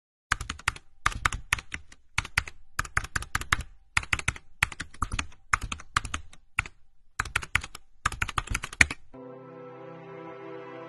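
Keyboard typing sound effect: rapid clicks in quick runs of several keystrokes with short pauses between. About a second before the end the typing stops and slow, sustained music begins.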